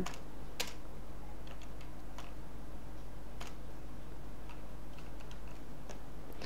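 Computer keyboard keystrokes: a handful of scattered clicks, the strongest about half a second in, over a steady low hum.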